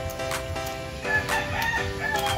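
A rooster crows once, starting about halfway through, over background music.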